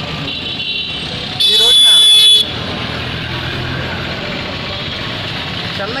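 A vehicle horn sounds once, a loud high blare about a second long that starts and stops abruptly, over a steady background of road traffic noise.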